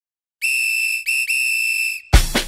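A whistle blown in three blasts at one steady high pitch, starting about half a second in: a long blast, a very short one, then another long one.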